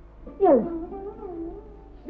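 Cat meowing: a sharp falling cry about half a second in, then a long wavering note.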